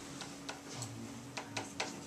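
Marker pen tapping and scratching on a whiteboard while writing, in about six short, uneven clicks.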